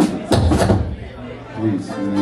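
Men's voices talking, the words unclear, with a short knock near the start.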